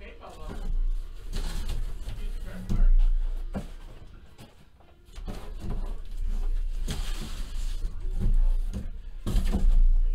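Cardboard product boxes being slid out of a cardboard shipping case and set down, with irregular scrapes, knocks and thumps of cardboard on cardboard.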